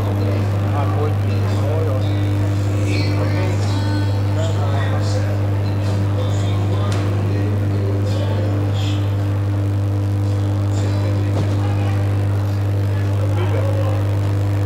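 A loud, steady low hum that does not change, with scattered chatter of people around the ring over it.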